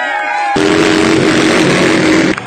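A sung music track plays for about half a second and is cut off by a loud crowd cheering, with a steady held tone running under the cheers.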